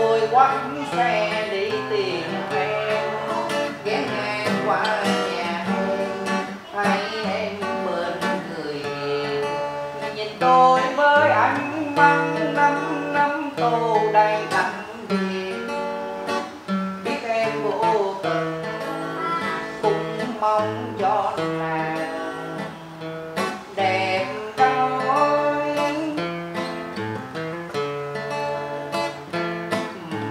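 Acoustic guitar strummed and picked, accompanying a man singing a Vietnamese song.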